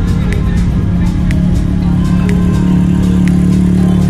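Background dance-electronic music with a steady beat.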